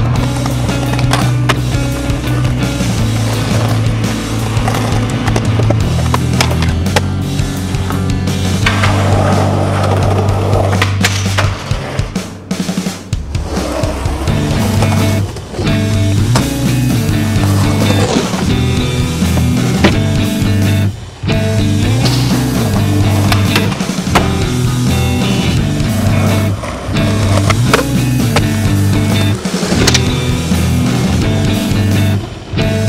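Skateboard wheels rolling on concrete and asphalt, with the sharp pops and clacks of tricks and landings, under a song with steady low notes.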